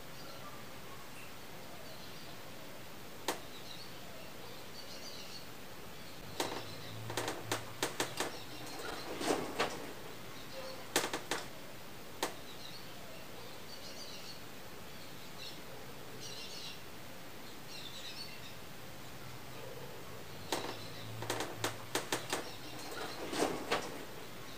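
Steady room background with faint high chirps scattered throughout, and sharp clicks and knocks: single ones here and there, and two quick clusters, one starting about six seconds in and one near the end.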